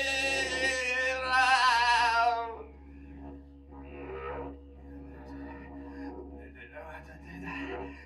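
A man's amplified singing voice holds a loud, strained note that wavers in pitch, then stops about two and a half seconds in. The rest is quieter, scattered vocal and room sounds over a steady low hum.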